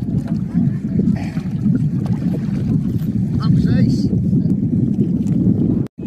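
Wind buffeting an outdoor microphone: a steady low rumble, with faint voices in the background.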